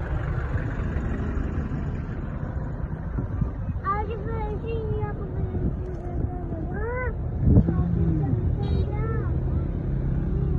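Steady road and engine rumble of a moving car, heard from inside the car. Several short calls that rise and fall in pitch sound over it from about four seconds in.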